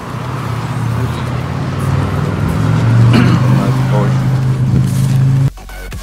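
A car engine running, growing steadily louder for about five seconds, with faint voices over it. It cuts off suddenly near the end and electronic dance music starts.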